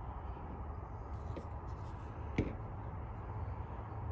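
Outdoor background noise at night: a steady low rumble, with one sharp click a little past halfway.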